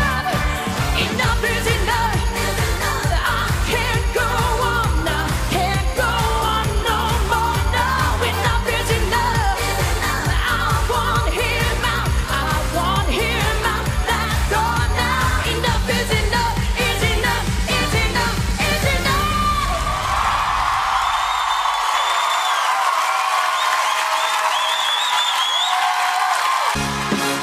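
A woman singing a fast disco-style pop song live with a band and a steady driving beat. About twenty seconds in, the drums and bass drop out and the song ends on a long sustained note.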